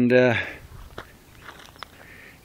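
A man's drawn-out word at the start, then a few faint, sharp clicks and scuffs over quiet outdoor air, about one second in and again near the end.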